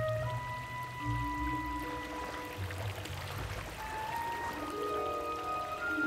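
Soft background music score: slow, sustained notes held for a second or two each, changing pitch, over low bass tones.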